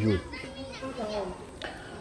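Faint, distant children's voices at play during a short pause in a man's talk.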